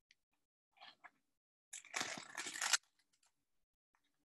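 Dry corn husk being torn apart lengthwise by hand: a short crackle about a second in, then a louder crackling tear lasting about a second.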